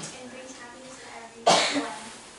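One short, loud cough into a handheld microphone about one and a half seconds in, over faint speech.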